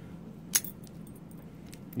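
A padlock with keys hanging from it clinks once, sharply, about half a second in as it is handled, with a few faint metal ticks near the end.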